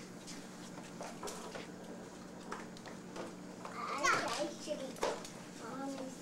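A young child's high-pitched wordless vocalizing, loudest about four seconds in, with a few light clicks before it.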